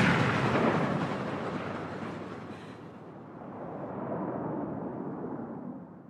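A deep rumbling boom from a film soundtrack dying away over about three seconds after a rifle shot, then a second, softer swell that fades out.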